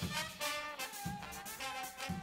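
Swing big band playing an instrumental passage, the horns holding sustained notes over the bass.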